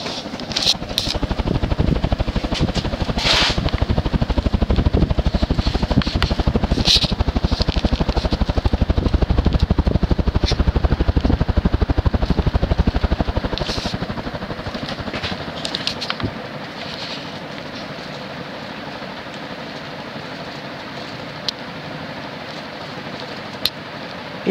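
Modern Fan Co Cirrus Hugger 52-inch three-blade ceiling fan with a General Electric stack motor running on high speed, its blades giving a fast pulsing whoosh of air. The pulsing rumble is strongest in the first half, then falls away to a quieter, steadier hum.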